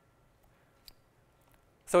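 Near-silent room with a single light click from the lectern laptop about a second in, the click that advances the presentation to the next slide. A man's voice begins right at the end.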